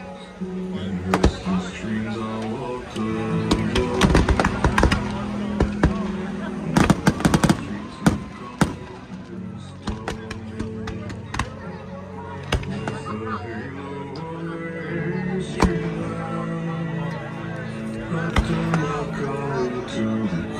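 Aerial fireworks shells bursting overhead: scattered bangs, with dense rapid volleys about a fifth of the way in and again near the halfway mark, over loud, steady background music.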